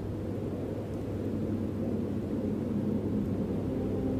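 A steady low rumble with a faint hum beneath it.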